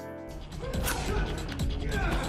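Audio of an action-film fight scene: a low rumbling score under scuffling, struggling noises.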